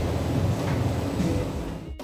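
Steady hum and hiss of commercial kitchen background noise, fading out near the end.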